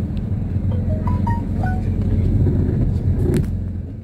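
Low, steady rumble of a car heard from inside the cabin, with a brief run of short musical notes at different pitches about a second in; the rumble fades toward the end.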